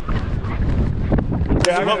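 Wind buffeting the camera microphone, a heavy low rumble with faint voices in it; it stops abruptly near the end, where a man's voice begins close up.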